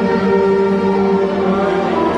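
Live band music: an instrumental passage of long held notes, with no singing.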